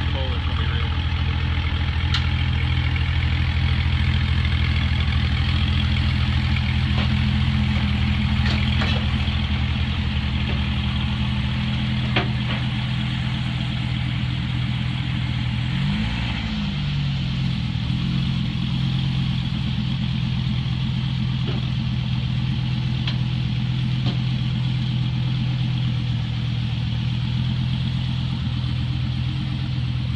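2017 Dodge Viper ACR's 8.4-litre V10 running at a steady low idle as the car rolls down a car-hauler ramp. Its pitch dips and comes back up about halfway through, as the car comes off the ramp.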